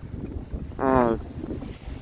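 Wind rumbling on the microphone, with a man's voice giving one short drawn-out syllable about a second in.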